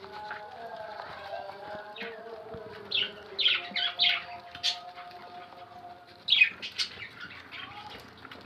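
A budgerigar bathing in a bucket of water, flapping its wings in the water in short splashy bursts: a cluster of them around the middle and another a little later. Budgie chirping and chatter runs underneath.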